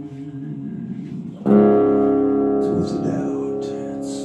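Acoustic guitar played live: quiet playing, then about a second and a half in a loud strummed chord that rings out and slowly fades.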